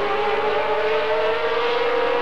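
Formula One racing car engine held at high revs, a steady high whine whose pitch climbs slowly.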